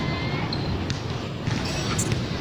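Outdoor park ambience: a steady background hum of distant voices, with a few soft thuds.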